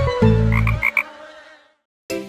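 Cartoon frog croaks, several short ones in quick succession, over the closing notes of a children's song. The sound fades out to silence in the second half.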